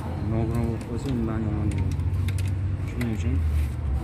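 A few sharp metallic clicks and taps of a hand tool on a car engine's throttle body as it is fitted, over a steady low hum.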